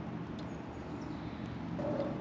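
Steady low outdoor background hum with no distinct event.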